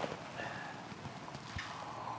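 Quiet pause with a few faint clicks and taps as a glass of water is picked up and raised to drink.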